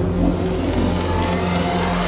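Uplifting psytrance in a build-up: a steady bass line under a synth noise sweep that rises in pitch.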